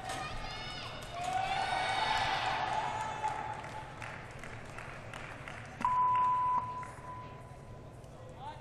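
Indistinct voices echoing in a large arena hall. About six seconds in, a loud electronic beep at one steady pitch sounds for under a second, then trails on faintly.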